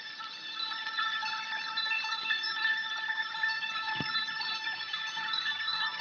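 High, tinkling chime tones ringing and overlapping one another, with a single click about four seconds in.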